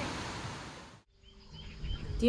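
Mountain stream rushing over boulders, fading out about a second in. After it, a few faint chirps.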